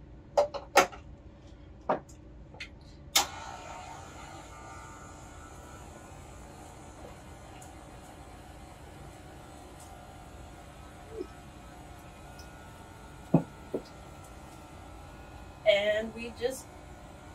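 KitchenAid stand mixer switched on about three seconds in, its motor humming steadily as it drives the juicing attachment on thawed vegetables. A few clicks from handling the plunger come before it, and a few knocks come later as vegetables are loaded and pushed down.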